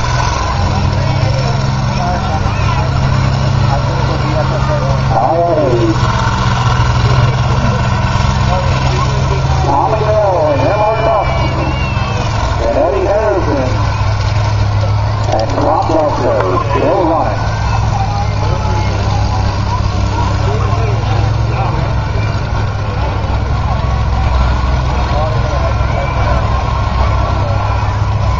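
Several combine harvester engines running together in a steady low drone under load, with indistinct voices over them at times.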